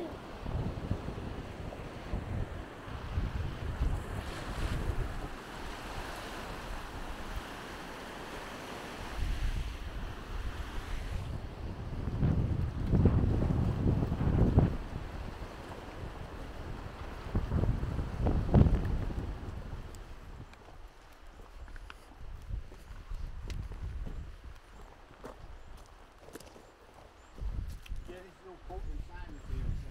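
Wind buffeting the microphone in gusts, strongest in two surges about halfway through. In the quieter last part there are faint clicks of footsteps on loose stones.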